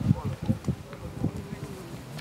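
A steady buzz lasting about a second in the second half, among short scattered bits of voice.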